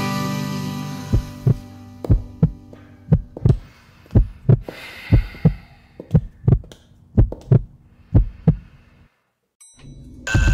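Heartbeat sound effect: paired low thumps about once a second, eight beats in all, following the fading end of a held musical chord. The beats stop near the end and the sound drops to brief silence.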